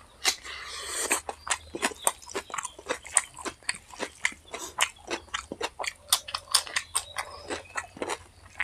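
Close-miked wet chewing and lip-smacking of a mouthful of chicken and raw onion: a dense, uneven run of sharp mouth clicks, several a second.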